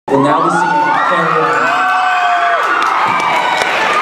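A school concert audience cheering and shouting, many voices overlapping in long held whoops and calls at a steady, loud level.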